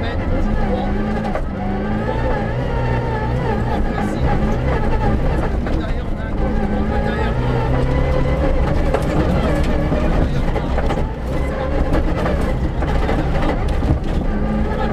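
Rally car engine heard from inside the cabin at speed on a dirt stage, revving up and dropping back again and again as it climbs through the gears, over a steady rumble of tyres on loose ground.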